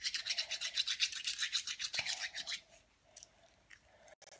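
Rapid, even scratching strokes, about ten a second, which stop about two and a half seconds in; a few faint ticks follow.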